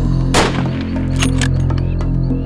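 A single rifle shot about a third of a second in, sharp and loud with a short echo, over background music with a steady low drone.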